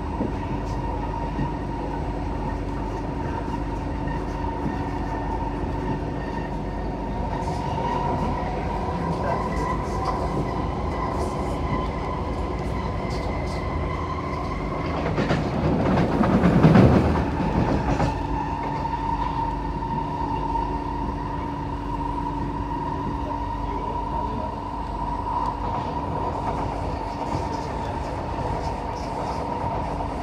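Running noise inside a Kawasaki-built SMRT C151A metro car travelling at steady speed: a continuous rumble with steady humming tones. About halfway through there is a loud rushing swell lasting a few seconds.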